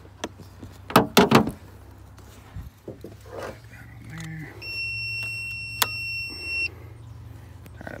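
A few loud metallic knocks about a second in, then a steady electronic beep lasting about two seconds from a portable jump-starter booster pack clamped to the car battery.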